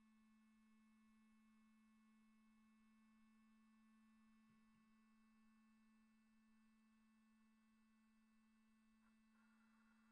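Near silence, with only a faint, steady low tone running underneath.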